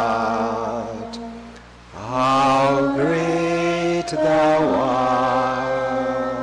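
A hymn sung in long, held notes with a wavering vibrato, with a brief dip between phrases about two seconds in.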